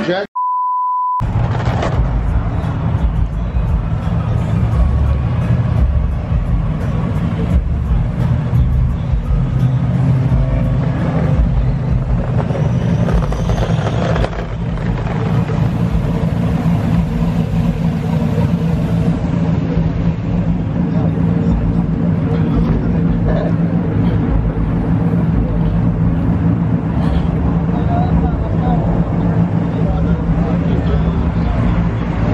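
A one-second censor bleep near the start, then a loud, steady low rumble with a hum, fitting idling vehicle engines in a parking lot.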